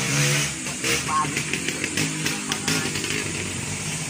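Indistinct talking over a small engine running in the background.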